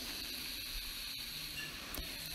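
Faint steady hiss of background noise, with a thin high-pitched tone running through it.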